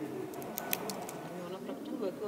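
Faint background sound of low murmured voices, with a few short sharp clicks just under a second in.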